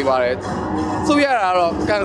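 A man's voice holding long, sliding vowels, with music playing behind.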